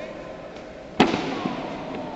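A single loud, sharp impact about a second in, echoing through a large hall, as two professional wrestlers grapple in the ring; voices murmur in the background.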